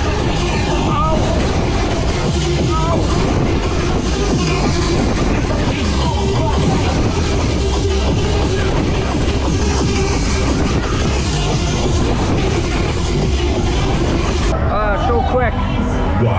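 Loud electronic fairground music from the ride's sound system, heard from on board a spinning Sizzler Twist ride, with voices mixed in over a steady rush of noise.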